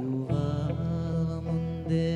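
Live rock band playing: long held notes, most likely a singer's sustained voice, over electric guitars, bass and drums, moving to new notes about a third of a second in.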